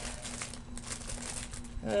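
Plastic retail packaging crinkling and rustling as it is handled, a run of soft crackles in the second half.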